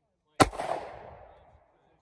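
A single gunshot about half a second in, followed by its echo dying away over about a second.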